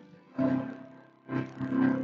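Church choir singing with instrumental accompaniment, in short sung phrases with brief dips between them.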